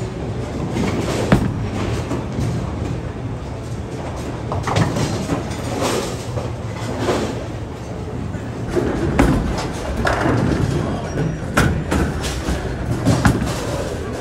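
Bowling alley sound: bowling balls rolling on the lanes as a steady low rumble, with sharp clattering crashes of pins about a second in and several times in the last five seconds, over background chatter.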